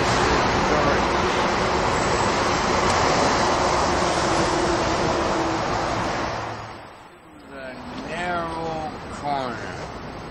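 Steady, loud rushing roar of nearby city road traffic, which fades away about six and a half seconds in; after that a man's voice is heard.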